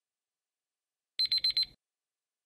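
Countdown timer alarm: four quick, high-pitched electronic beeps a little over a second in, marking time up on the quiz question.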